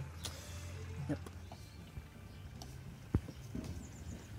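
Low, steady hum of a BrewZilla's recirculation pump circulating the heating brewing water, with a single sharp click a little after three seconds.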